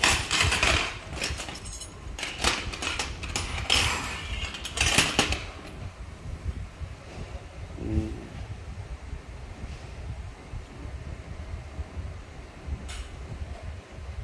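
Silver bangles clinking against one another and against a glass tabletop as they are handled and set down, a run of sharp clinks in the first five seconds and one more near the end. A low steady rumble runs underneath.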